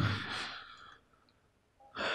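A man's breathing into a lectern microphone: the tail of an exhale fading out in the first half-second, a pause of about a second, then a short inhale near the end.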